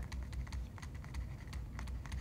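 Stylus tapping and scratching on a tablet screen while a word is handwritten: a quick, irregular run of small ticks, over a steady low hum.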